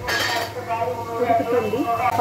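A metal utensil clinks and clatters against a pan in the first half-second, under a voice that runs throughout.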